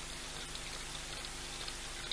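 Young male lion lapping water: soft, irregular wet clicks and drips over a steady background hiss.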